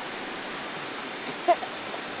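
Steady rushing of a river, with one brief pitched chirp about one and a half seconds in.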